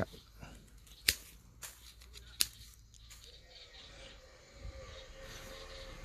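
Hand pruning shears snipping thin branches off a small shrub: two sharp, loud snips about a second and a half apart, with a few fainter clicks of the blades around them.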